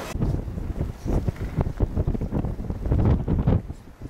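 Strong wind buffeting the microphone in uneven, rumbling gusts, easing off briefly near the end.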